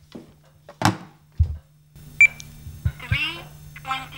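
A couple of sharp knocks and a dull thump, then a short high beep from a talking wristwatch followed by its spoken announcement.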